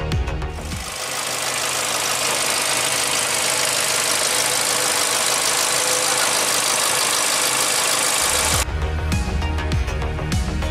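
Volkswagen Jetta four-cylinder engine idling with the hood open: a steady, even whirr with a lot of hiss, from about a second in until near the end. Background music with a heavy beat plays at the start and comes back near the end.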